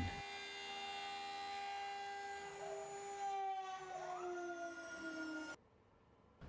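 CNC router spindle whining steadily while a 90-degree V-bit chamfers the tip of a turned wooden cane blank; the whine sags slightly in pitch and cuts off abruptly about five and a half seconds in.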